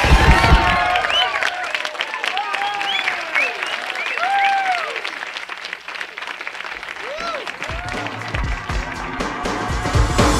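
Audience applauding and cheering, with many whoops that rise and fall in pitch. Backing music thins out after the first second, and its beat comes back in near the end.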